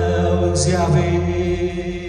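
A man singing a worship chorus into a microphone, accompanied by sustained chords on a Yamaha electronic keyboard.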